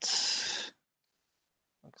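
A short breath out, like a sigh, into a close microphone, lasting under a second, then dead silence; a man's voice starts just before the end.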